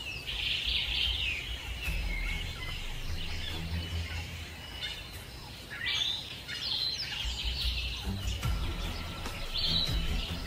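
High-pitched bird chirping in bursts, about a second in, again from about six seconds, and near the end, over a steady low rumble.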